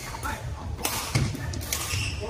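Badminton racket hits on a shuttlecock and thuds of footwork on the court during a doubles rally: several short, sharp impacts, over background voices in a large hall.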